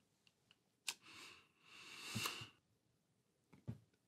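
Asthma inhaler being used: a sharp click about a second in, then breathy hissing through the mouthpiece, the second breath longer. A couple of faint clicks follow near the end.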